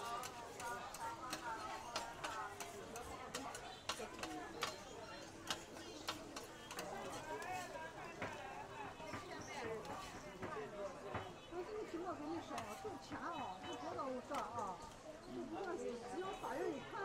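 Metal spatulas clicking and scraping on a flat iron griddle as fried potato balls are turned and scooped up, the clicks most frequent in the first few seconds. A crowd talks throughout.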